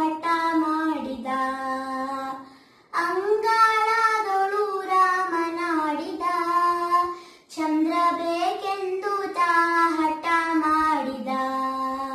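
A young girl singing a devotional song solo and unaccompanied, in long held, gliding phrases. She pauses briefly for breath twice, about three seconds in and again halfway through.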